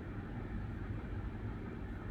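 Steady low background hum with a faint even hiss, with no distinct events: room tone.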